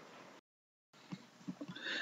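Very quiet room tone of a voice-over recording, broken by a brief dead-silent gap just before the middle, then a few faint clicks in the second half.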